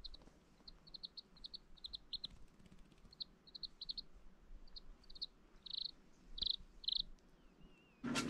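A Serama bantam chick peeping faintly in short, high cheeps, in quick runs with pauses between, ending with a few longer, louder peeps.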